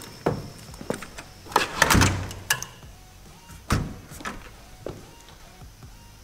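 A door being handled and opened: a series of knocks, thuds and rattles, loudest about two seconds in, with smaller knocks after.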